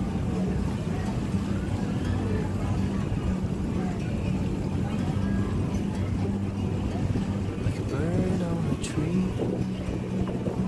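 Steady low drone of a ship's engine with wind noise on deck, running evenly throughout. People talk briefly near the end.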